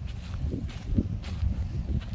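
Wind buffeting a phone's microphone, an uneven low rumble, with a few soft thuds.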